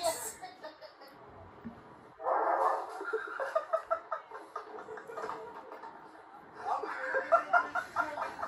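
People laughing amid speech, starting abruptly about two seconds in and building again near the end.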